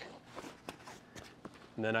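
Faint rustling and a few light taps as a fabric camera sling bag is handled and stood on a wooden table. A man's voice starts near the end.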